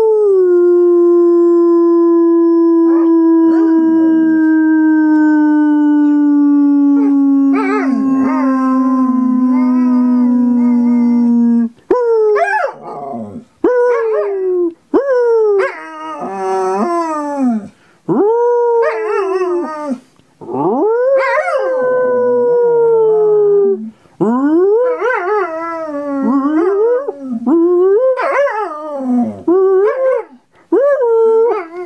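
A person's long, slowly falling howl held for about twelve seconds, with a dog's higher, wavering howl joining in over it near the end. After that the dog howls alone in a run of short calls that rise and fall in pitch, with brief yips between them.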